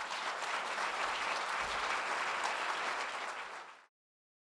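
Audience applauding, steady clapping that fades out and cuts off just before the end.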